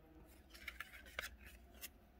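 Faint handling of baseball trading cards: a few light clicks and slides of card stock as one card is set down and the next picked up.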